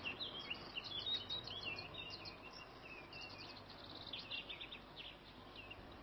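Faint birdsong: many small, quick chirping and twittering notes, thickest in the first half, over a steady background hiss.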